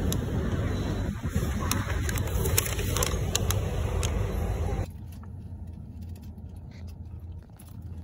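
Paper bag and plastic wrapper rustling and crinkling as hands open them, with many small sharp clicks over a steady low rumble. About five seconds in this stops abruptly, leaving a quieter low hum.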